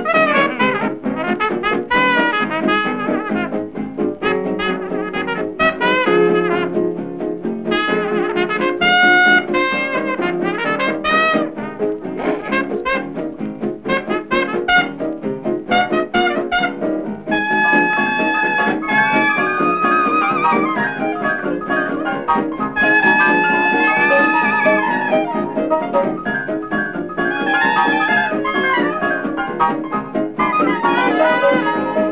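Instrumental stretch of a small swing-jazz band recording, with brass, chiefly trumpet, leading. Long held notes come in just past the middle and again a few seconds later.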